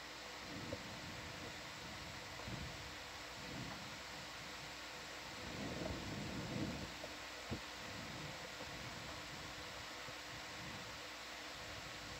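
Quiet room tone: a steady even hiss with a faint fan-like hum underneath. A few soft low murmurs come and go, and there is a single faint click a little past halfway.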